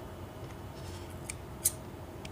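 Ideal 35-087 electrician's snips working, their steel blades giving a faint sharp click and then a louder one just after, about one and a half seconds in.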